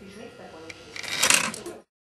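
A short mechanical clatter about a second and a quarter in, as the model engine shed's doors close, over low voices in the room. The sound cuts off suddenly just before the end.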